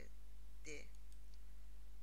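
Two faint computer mouse clicks just after a second in, over a steady low electrical hum, with a brief vocal sound shortly before them.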